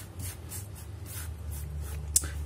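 Faint rustling and rubbing of fingers handling fresh herbs and the raw trout, a few soft scratchy strokes, over a steady low hum.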